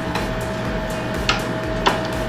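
Two sharp clicks about half a second apart in the second half, as the metal post of a microphone suspension boom arm is worked down into its desk clamp. A steady hum runs underneath.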